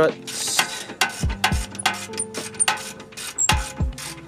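Hand ratchet clicking in quick runs as the bolts holding the rear strut are worked loose, with a few dull knocks in between.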